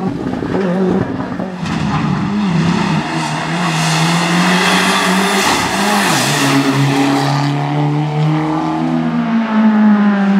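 Turbocharged four-cylinder rally cars, a Ford Fiesta R5 and then a Mitsubishi Lancer Evolution, driven hard on a tarmac stage: the engines rev up and drop back through gear changes and lifts. A rush of tyre noise comes in the middle.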